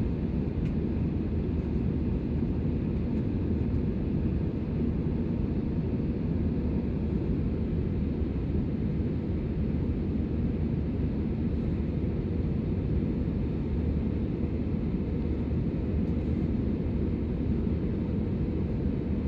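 Steady cabin noise of an Airbus A320 jet airliner in flight, heard inside the cabin at a window seat: an even, deep rush of engine and airflow noise that does not change.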